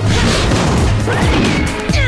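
Cartoon fight sound effects: a loud crash right at the start, fading over about a second, as a flying kick is thrown, over driving action music.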